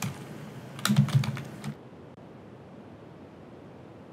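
Computer keyboard typing: a short run of keystrokes from about one to two seconds in, as a terminal command is typed.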